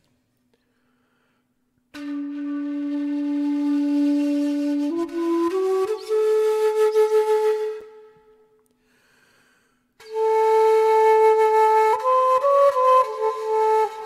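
An old shakuhachi (Japanese end-blown bamboo flute) played haltingly by a beginner, with a breathy tone. A low note is held for about three seconds and then steps up through a few notes to a higher held note. After a pause of about two seconds, a second phrase of held notes climbs and falls again.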